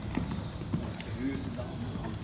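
Hoofbeats of a Zangersheide show jumping horse cantering on sand footing: a few dull thuds in the first second, over a low rumble of the hall.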